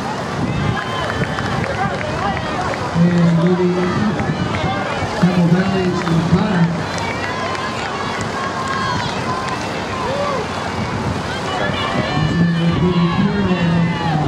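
Spectators shouting encouragement to passing runners, many voices overlapping. A man's voice over the stadium loudspeaker comes in about three seconds in, again around five seconds, and near the end.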